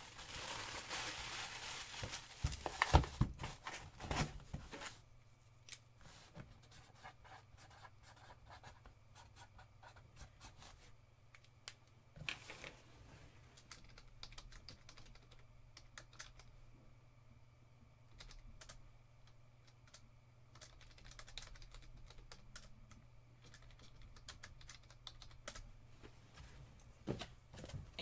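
Paper packing crinkling and rustling as it is handled for the first few seconds, then light computer keyboard typing, scattered clicks, over a steady low hum.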